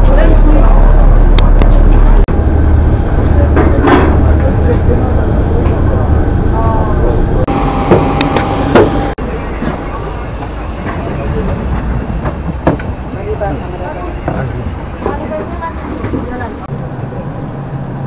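Low, steady engine rumble inside an airport transfer bus for the first two seconds, then airliner boarding noise: a low hum with a thin, steady high whine, scattered bumps of luggage and passengers' voices in the background.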